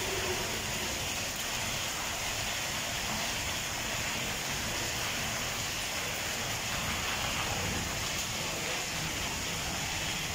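Steady rain falling, an even hiss that does not let up.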